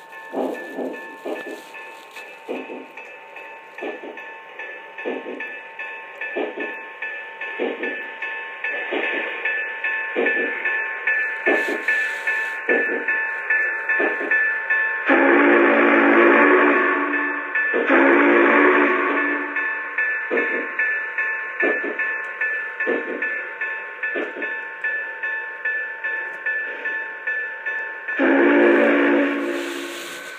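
Lionel Union Pacific Challenger model steam locomotive's onboard sound system playing a steady rhythmic chuffing with a steady tone underneath, as the train runs. Its whistle blows two long blasts about halfway through and one more near the end.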